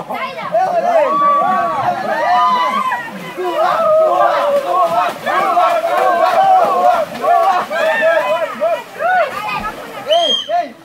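Several people's voices overlapping, calling out and chattering over one another without a break.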